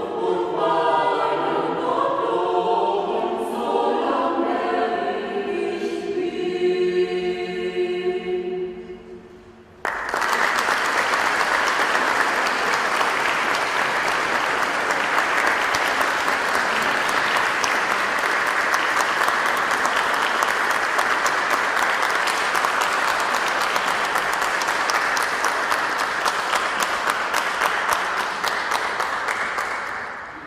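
Mixed choir of men and women singing in chords, ending on a held note that fades away about eight seconds in. Audience applause breaks out suddenly at about ten seconds and goes on steadily for some twenty seconds.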